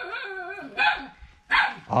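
Dog barking angrily at a stranger, two sharp barks about a second apart.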